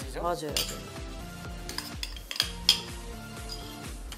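Metal spoon clinking and scraping against a small bowl and a clay mortar as ingredients are spooned in for papaya salad: a few sharp, irregular clinks, the loudest just past the middle.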